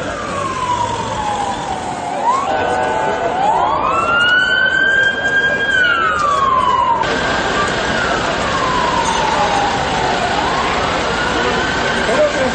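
Emergency vehicle siren in a slow wail, its pitch sweeping down and back up over several seconds at a time, over the noise of a crowd.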